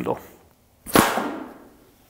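One sharp, forceful puff of breath blasting a dart out of a Cold Steel blowgun about a second in, with a short rushing tail that fades over most of a second.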